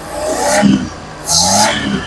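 Suzuki Mehran's carburetted three-cylinder engine, air cleaner off, revved twice by hand at the carburettor. Each blip rises in pitch, with a strong intake hiss, and it drops back to idle between them. This is the engine running freshly fitted with a new distributor CDI unit and ignition coil, which the mechanic judges to be running fine.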